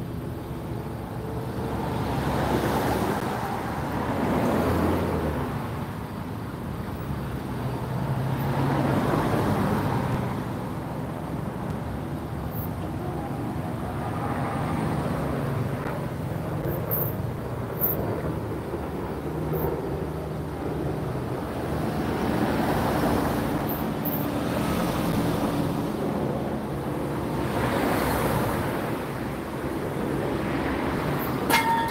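Road traffic: several vehicles pass one after another, each rising and fading over a few seconds, over a steady low hum.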